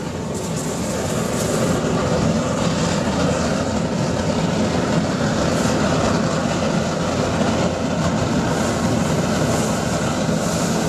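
Blower-fed waste-oil burner, built from a fire extinguisher bottle, burning at full output: a steady rush of flame and blower air. It grows louder over the first couple of seconds, then holds level.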